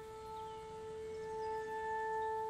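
Background music: a single sustained note with overtones, held steadily and slowly growing louder.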